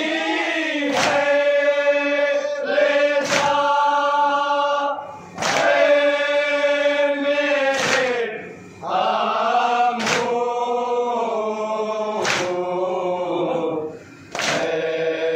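A group of men chanting a Shia noha in unison in long held lines. A sharp chest-beating slap (matam) from the group comes about every two and a half seconds, keeping the beat.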